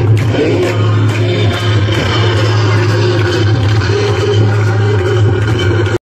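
Hindu aarti song: loud devotional music with singing and a steady low hum under it, which stops abruptly at the end.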